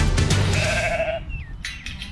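Background theme music fading out about a second in, over a sheep bleating with a wavering call from a mob of sheep in a yard. After the music stops, quieter yard sound with a few short clicks remains.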